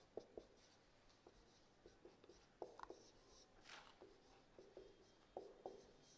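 Marker pen writing on a whiteboard: short, faint strokes scattered through, with quiet between them.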